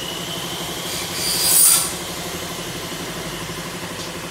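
A brief scraping rasp about a second and a half in, from an aluminium frame profile sliding against the metal work table, over a steady low hum.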